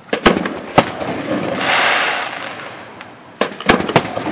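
Aerial firework shells bursting: two sharp bangs just after the start and a quick cluster of bangs near the end, with a hissing rush between them.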